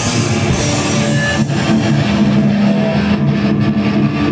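Live hardcore band playing loud: distorted electric guitars, bass and drum kit, with a chord held ringing through the second half.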